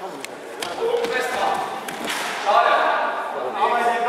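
Shouting voices of coaches and spectators ringing in a large sports hall, with a few sharp knocks and thuds in the first two seconds as the wrestlers grapple and go down onto the mat.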